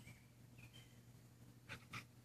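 Near silence, with a few faint, short, high chirps that fall in pitch and a couple of soft breathy puffs near the end.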